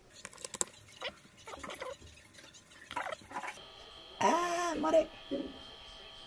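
A man's quiet, broken-up speech, with a few clicks near the start and one louder drawn-out vocal sound about four seconds in. A faint steady high whine comes in about halfway through and holds.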